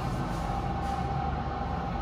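Steady low machine hum and rumble with a thin, steady high whine running under it.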